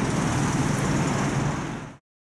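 Street traffic noise: a steady rumble of cars on the road, fading out near the end.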